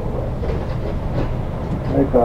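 Idling diesel engine of a stopped city bus, heard from inside the cabin as a steady low rumble, with faint voices over it.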